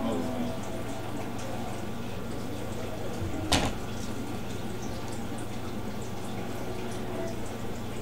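Room tone with a steady low hum and faint voices in the background; a single sharp click about three and a half seconds in.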